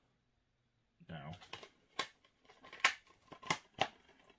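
Plastic DVD cases being handled, giving a handful of sharp clicks and snaps in the last two seconds, the loudest near the middle of them.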